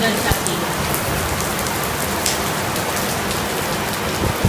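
Heavy monsoon rain pouring steadily, heard as a dense, even hiss.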